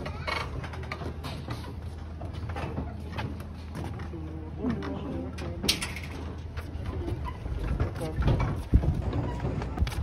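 Scattered voices of people talking over a steady low hum, with a sharp click about halfway through and a few low thumps near the end.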